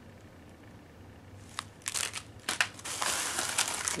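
Crinkling of clear plastic packaging being handled. It starts after a quiet second or so and grows busier and louder, with sharp crackles.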